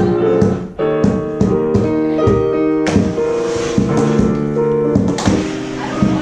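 Digital piano being played: chords and melody notes ringing on, with a short break just before a second in where new chords begin.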